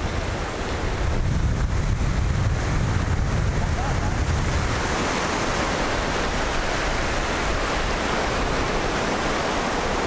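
Surf washing onto a beach, with wind buffeting the microphone. The low wind rumble is strongest in the first half, and the brighter wash of the breaking waves takes over from about halfway.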